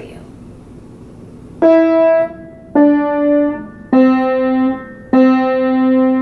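Upright piano playing four single notes on the white keys under the two black keys at the centre of the keyboard. The notes step down in pitch, and the lowest is played twice.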